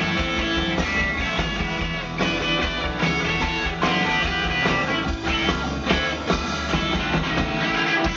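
Live rock band playing an instrumental stretch of a rock and roll song, with no vocals: electric guitars over bass and drums.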